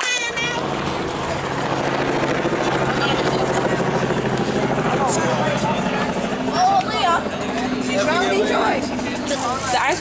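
An engine running steadily, a low even hum, under scattered voices and chatter.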